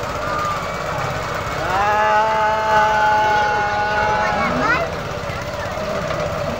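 A carnival airplane swing ride running with a steady, rattling motor rumble. From about two seconds in, a person's voice holds one long call for about three seconds, sliding up in pitch as it ends.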